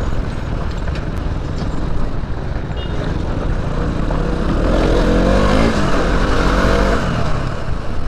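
Motorcycle engine running as the bike rolls slowly over a rough road, with a rumble of wind on the microphone. About halfway through, the engine note rises and then falls.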